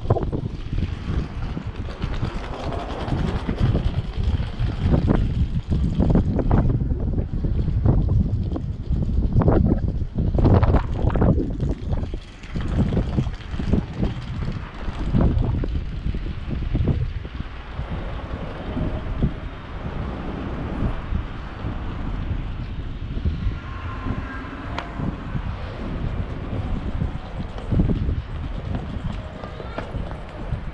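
Wind buffeting the camera's microphone in uneven gusts, a low rumble rising and falling throughout, over the general noise of a busy city street.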